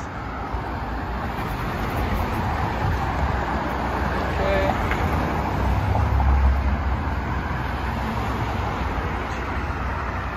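Street traffic: a car passes close by, its engine and tyre noise swelling to a peak about six seconds in and then fading.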